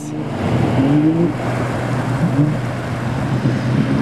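A watercraft engine running steadily under a rush of wind and water, with a couple of short rises in pitch.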